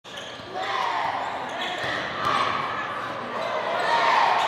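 Basketball bouncing on a hardwood gym floor during a game, with the voices and shouts of players and crowd over it.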